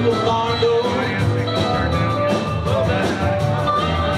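A live rock band playing a song with a steady beat.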